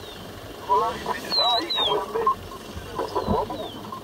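People talking in the background, with two short high whistles that slide down in pitch.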